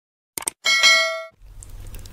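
Subscribe-button animation sound effect: a quick double mouse click, then a bright bell ding that rings out for under a second. Near the end a faint low room hum comes in.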